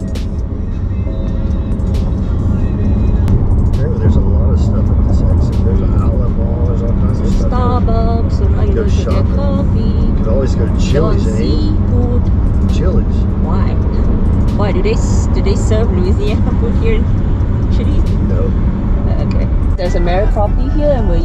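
Steady road and engine noise heard inside a car's cabin at highway speed. It grows louder over the first few seconds, and people talk over it.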